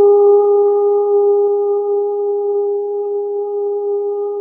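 A woman's voice holding one long, steady sung note in light-language toning, slowly fading a little.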